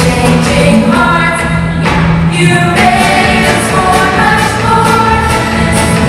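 A live folk band playing a Christian folk song: several voices singing together over banjo, acoustic guitar and keyboard, with a steady held bass underneath.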